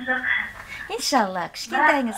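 Speech only: a woman talking.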